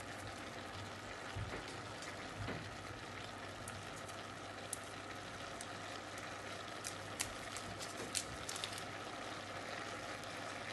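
Minced meat and vegetables sizzling softly in a stainless steel pot on the stove, with a few sharp clicks in the second half.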